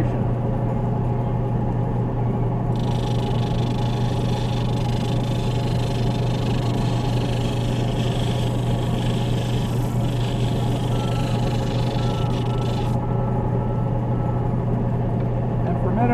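End lap sander's motor humming steadily with the sandpaper disc spinning. From about three seconds in to about thirteen seconds in, a stone on a dop stick is held lightly against the disc, adding a scratchy sanding noise over the hum.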